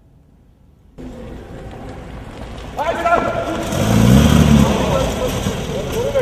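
Several people talking, with a car engine revving briefly about four seconds in.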